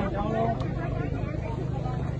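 Several people talking at once in a street, over the steady hum of a nearby motor vehicle engine running.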